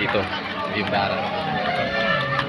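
Voices of many people talking and calling out to one another, with a brief spoken word at the start.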